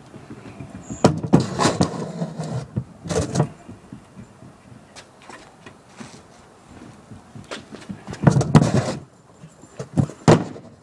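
Bike wheels rolling and rattling over concrete close by, in two loud bursts of rumble and clatter, about a second in and again near the end, with scattered clicks between.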